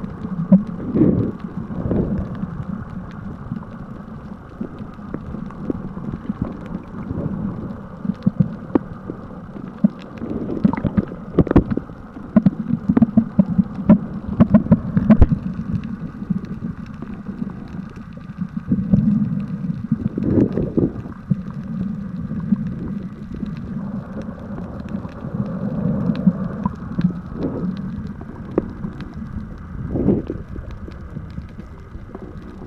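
Water noise picked up by a camera filming underwater: a muffled low rumble and sloshing with irregular sharp clicks and knocks, louder in two stretches near the middle.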